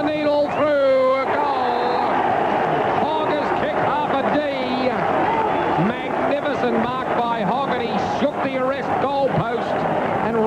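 Male radio commentator talking continuously over steady crowd noise.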